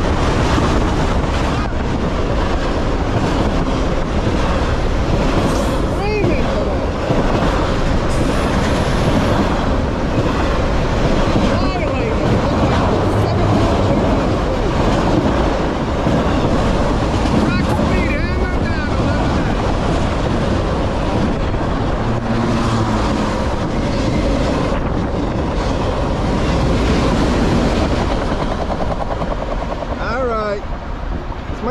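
Norfolk Southern freight train of autorack cars rolling past close by at speed: a loud, steady rumble and clatter of steel wheels on rail, with a few brief squeals.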